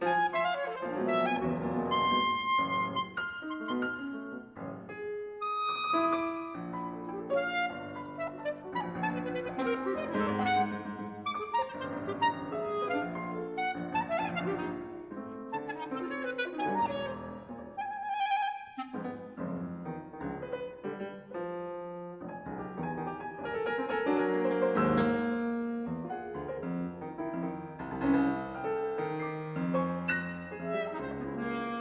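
Clarinet and piano playing a fast contemporary classical chamber piece, with busy, rapidly changing lines and no pauses.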